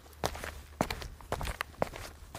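Cartoon footstep sound effects: a quiet series of separate steps, roughly one every half second.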